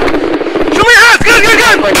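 A police officer shouting a command in a loud, high-pitched voice for about a second, over a steady background noise.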